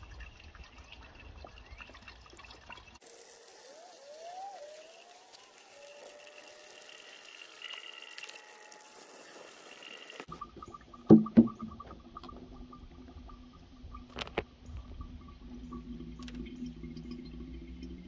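Antifreeze coolant pouring from a one-gallon plastic jug through a plastic funnel into a truck's coolant reservoir, faint throughout. A couple of sharp knocks come about eleven seconds in.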